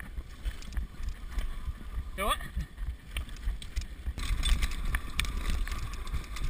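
Downhill mountain bike rattling over a rocky dirt trail, with wind buffeting the microphone and many sharp clicks and knocks from the bike and tyres. A brief rising vocal whoop about two seconds in; the tyre and wind noise grows louder from about four seconds as the bike speeds up.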